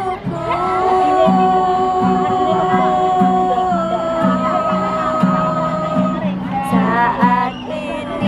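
Women singing a slow song in long held notes, accompanied by a steadily strummed acoustic guitar.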